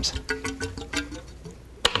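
Water and air glugging and bubbling inside an inverted four-foot water-filled tube as the test tube slides back down it: a quick run of clicking, gurgling pops with a few short tones that thins out after about a second, then one sharp click near the end.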